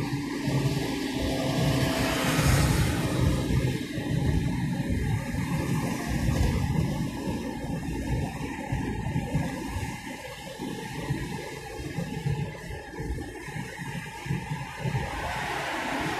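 Steady rushing road and wind noise from a car driving on a highway, with background music mixed in.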